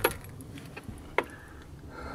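Two short, sharp clicks about a second apart over a low, steady background noise.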